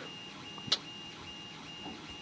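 Quiet ballpoint pen scratching on paper, with one sharp click about two-thirds of a second in. Behind it a faint high electronic beep pulses rapidly and steadily.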